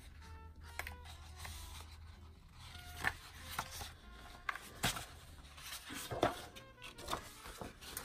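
Sheets of printer paper rustling and flapping as a stack of printed pages is leafed through, with a few sharp crackles. A faint low hum is heard in the first few seconds.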